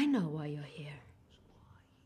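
A person's voice: one short wordless utterance in the first second, falling in pitch, followed by quiet room tone.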